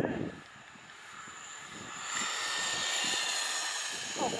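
Traxxas RC truck running on asphalt: a motor whine with tyre noise that swells from about a second in and eases slightly near the end.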